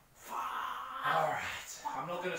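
A man's voice: a drawn-out, groan-like exclamation without clear words.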